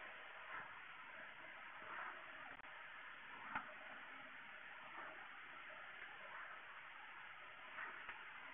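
Near silence: faint room hiss with a few soft ticks, the sharpest about halfway through.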